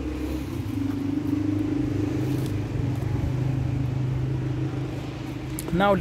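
An engine running with a steady low hum that eases off shortly before the end.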